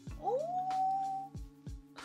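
A woman's drawn-out 'ooh', rising in pitch and then held for about a second, over background music with a steady thumping beat.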